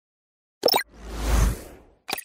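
Logo-animation sound effects: a quick double pop about half a second in, then a whoosh with a low rumble that swells and fades over about a second.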